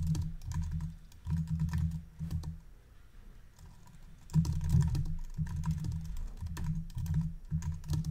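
Typing on a computer keyboard in two quick runs of keystrokes, with a pause of under two seconds about a third of the way in.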